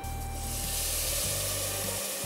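Water poured into a hot pot of fried rice grains, hissing and sizzling steadily as it hits the hot pan.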